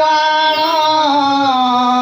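Odia kirtana devotional singing: one long, held sung note with a slight waver, dropping in pitch about a second and a half in.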